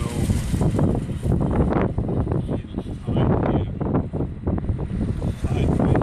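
Wind buffeting the microphone, a loud, gusty rumble that rises and falls.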